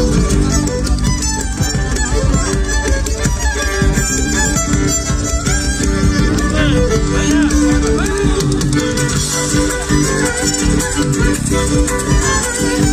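A live Argentine folk band led by a violin, with guitar, playing dance music loudly through a PA.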